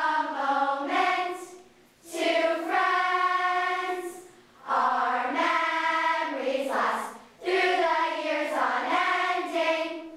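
A large group of girls singing a song together in unison. They sing in sustained phrases broken by short pauses for breath, four phrases in all.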